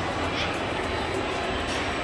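Steady, even din of an indoor amusement park heard from a moving ride, with rides running and hall noise blended together. There is a brief high chirp about half a second in.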